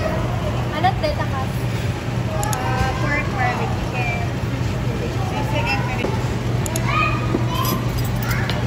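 Indistinct chatter of voices at the tables around, over a steady low hum, with a couple of light clicks.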